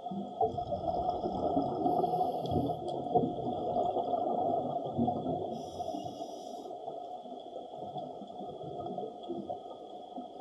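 Underwater sound of a scuba diver breathing through a regulator. Short hisses of inhalation come about two seconds in and again near six seconds, and a long bubbling, crackling rush of exhaled bubbles fills most of the first half, all over a faint steady hum.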